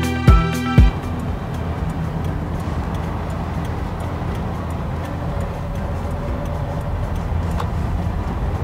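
Background music with a steady beat that stops under a second in, giving way to the steady low rumble inside an electric car's cabin as it drives slowly, with no engine sound.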